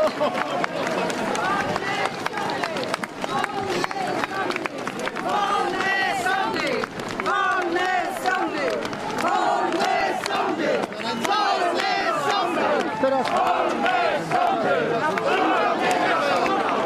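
Large street crowd of protesters, many voices shouting and calling out at once in a continuous loud din.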